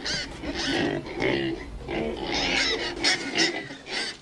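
Pigs oinking: a string of short calls one after another.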